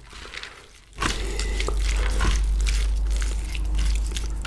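A metal spoon and fork tossing a wet papaya salad on a steel tray, close to the microphone. From about a second in there is wet squelching, with clicks and scrapes of the utensils over a low rumble.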